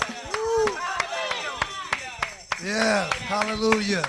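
Sharp, rhythmic hand claps, about four a second, with voices calling out over them.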